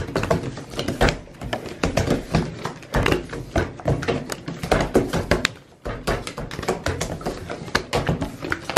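Playing cards being passed quickly from hand to hand and set down on a wooden table, making an irregular run of light taps and slaps. There is a short lull a little past the middle.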